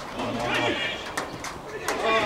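A player's drawn-out shout on a football pitch, with a couple of sharp knocks of a football being kicked near the end.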